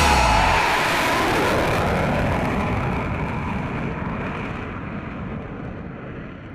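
Jet aircraft engine noise receding and fading out gradually, the higher pitches dying away first.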